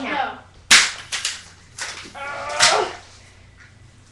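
Metal crutches clashing against each other: a string of sharp clacks, the loudest just under a second in, with yelling in between.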